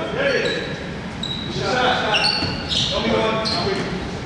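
Pickup basketball on a hardwood gym floor: the ball bouncing and sneakers giving short, high squeaks as players cut, with players' voices, all echoing in the large gym.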